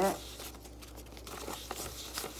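Paper dollar bills rustling and crinkling in the hands as a stack is shuffled and turned to face one way: a run of small, irregular crackles.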